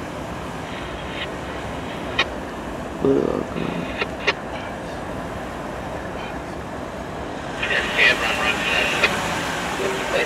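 A freight train led by GE ES44AC diesel locomotives rolls by with a steady rumble. A few sharp clanks come about two and four seconds in, and voices come in near the end.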